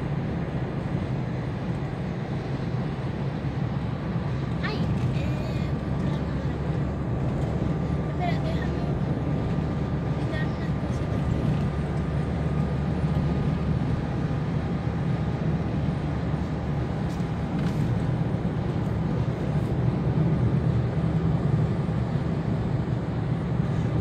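Steady road and engine noise heard inside a car cabin while driving at speed, a low, even drone. A faint thin whine sits over it through the middle of the stretch.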